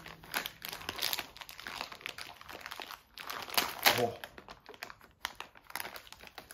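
Plastic blind-bag packet crinkling and rustling in many small crackles as it is handled and worked open by hand.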